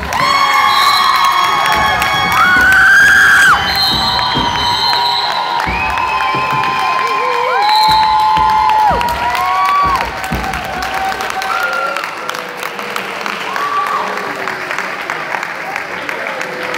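Crowd of young voices screaming and cheering, many high shrieks held at once and overlapping. It is loudest over the first ten seconds, then thins into looser crowd noise.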